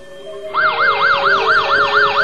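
Emergency vehicle siren starting about half a second in, a fast yelp that rises and falls about four times a second.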